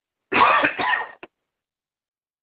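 A person clearing their throat once, a short burst just under a second long, heard over a call-in telephone line.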